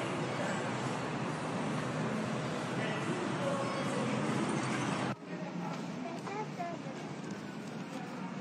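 Road traffic noise with a city bus passing close by. About five seconds in the sound cuts suddenly to a quieter street scene with faint voices.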